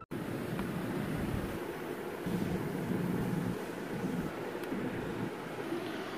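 Steady background hiss with a faint low murmur underneath, with no distinct event standing out.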